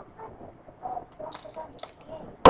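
Faint, distant voices in a quiet room, with a few light ticks in the second half.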